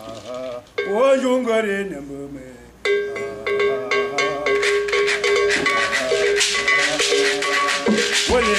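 Bamoun folk music: a voice sings a short bending phrase, then from about three seconds in a long, steady held note sounds over rapid rattle strokes that grow denser and louder.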